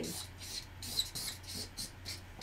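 Felt-tip marker drawing on flip-chart paper: a run of quick, short scratchy strokes as a small figure is sketched.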